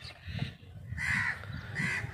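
Two short, harsh bird calls, the first about a second in and the second just before the end, over low background rumble.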